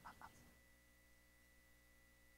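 Near silence: room tone with a faint steady hum. A brief rapid run of short pulses dies away about half a second in.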